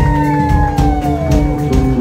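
Live rock band playing loudly, drums striking over held chords, with a high held note gliding down in pitch over about a second and a half.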